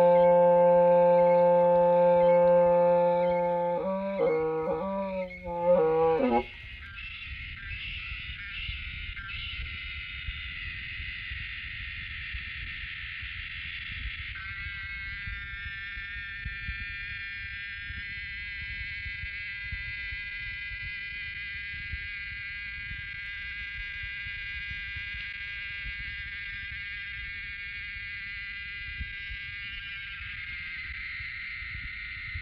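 Hmong raj nplaim (bamboo free-reed pipe) holding one steady low note, then playing a few wavering, bending notes that stop about six seconds in. After it, a much quieter steady high drone of many close tones carries on over a low rumble.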